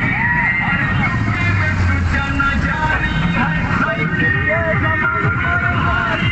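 Several motorcycle engines running at low speed in a procession, with voices calling out and music playing over them.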